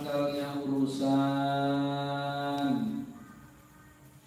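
A man's voice chanting through a microphone in long, steadily held notes. The last note slides down about three seconds in and the chant stops.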